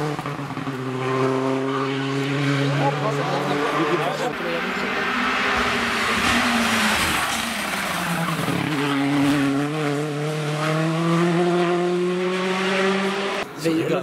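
Rally car engine at high revs passing at speed, its pitch falling as it goes by. It then runs hard again with the pitch slowly climbing, and the sound breaks off abruptly near the end.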